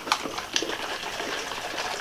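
Coffee with creamer and protein powder sloshing inside a lidded container as it is shaken by hand to mix in the powder.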